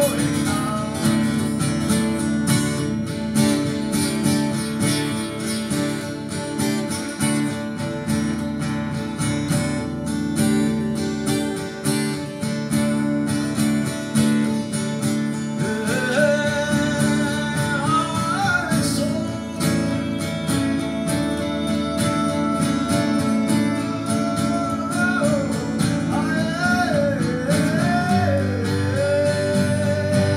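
Two acoustic guitars played together in a live performance, strummed and picked. From about halfway through, a man sings a melody over them.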